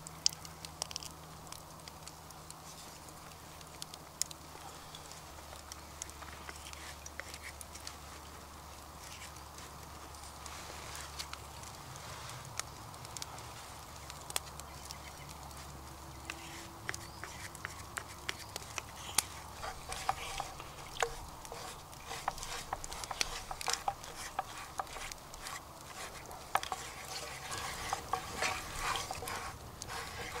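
A wooden spatula stirring and scraping liquid in a frying pan, with many light clicks and taps against the pan that get busier in the second half.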